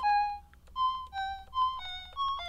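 Casio VL-Tone mini keyboard playing a simple one-note-at-a-time melody of short, stepping notes, about five in two seconds.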